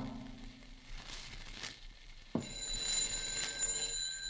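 Telephone bell ringing, a radio-drama sound effect: one continuous ring that starts suddenly a little past halfway through, after the tail of a music bridge fades out.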